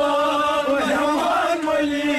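Men's voices singing a Kashmiri Sufi devotional song together in a chant-like line, holding one long note with a brief waver just before the middle.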